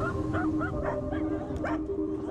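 A dog yipping in a quick series of short, high barks, about six in two seconds, while it runs an agility course.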